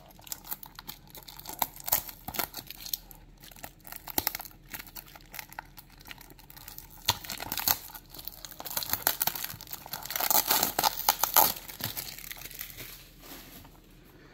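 Fingers picking at and peeling the seal off a small cardboard toy box, with scattered small clicks and crinkles. About seven seconds in comes a longer stretch of peeling and rustling, loudest near the end.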